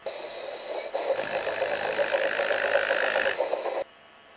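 Steam locomotive sound effect: a loud, steady rushing hiss that swells after about a second and cuts off suddenly shortly before the end.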